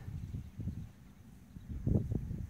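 Wind rumbling on the microphone, fading after about half a second, with a brief louder low rumble near the end.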